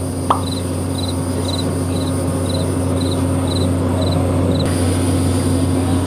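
A steady low machine hum with constant background noise, over which an insect chirps high and thin, a short three-pulse chirp repeated about twice a second.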